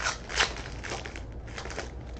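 Plastic wrapper of a baseball card pack crinkling as it is torn open by hand, in about four short crackly bursts.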